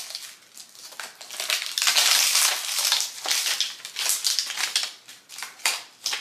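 Clear plastic bag crinkling and rustling in irregular bursts as a plastic compartment box of sprinkles is pulled out of it.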